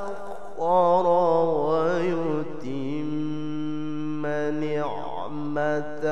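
A man reciting the Quran in melodic chanted style (tajwid), drawing out the words in long sung notes. The first couple of seconds waver and turn in ornaments, then he holds a long steady note that breaks briefly near the end.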